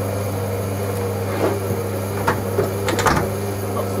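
Servis Quartz Plus washing machine running its distribute phase before the spin: the drum motor hums steadily as the drum turns the load, with a few short knocks partway through.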